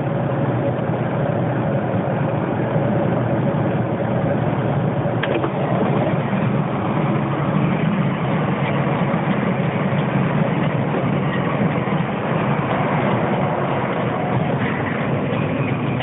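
Steady engine and road noise inside the cab of a 2008 Mercedes-Benz Actros 2546 lorry on the move, its V6 diesel running under way with a tanker in tow.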